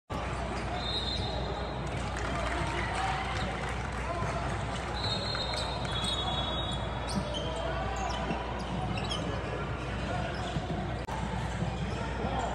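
Basketball game sounds on a hardwood court: a ball bouncing, a few short high sneaker squeaks and footfalls over a steady din of voices in a large gym.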